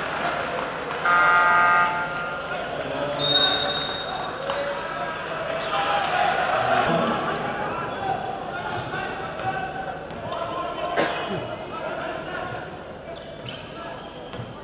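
Indoor basketball game: a loud, steady horn-like buzzer sounds for about a second near the start and a short, high whistle blows soon after, then a basketball is dribbled on the hardwood court over crowd chatter, with sharp knocks and squeaks scattered through.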